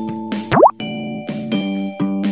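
Gentle children's background music with a quick rising cartoon sound effect, a short upward swoop, about half a second in.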